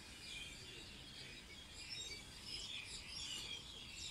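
Small birds chirping and twittering, many short high calls overlapping, over a faint low steady background rumble.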